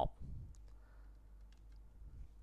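A few faint, separate clicks from keys being pressed on a computer keyboard.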